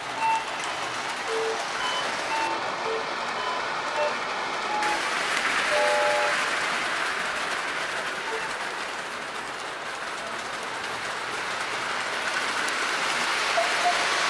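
Lionel toy circus train running on three-rail O-gauge track: a steady rumble and clatter of the cars' wheels on the metal rails. It grows a little louder as the cars pass close, about six seconds in and again near the end.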